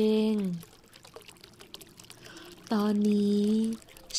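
A woman's calm voice speaking slow Thai affirmations. It draws out the end of a word, pauses for about two seconds with only a faint steady hiss beneath, then speaks again near the end.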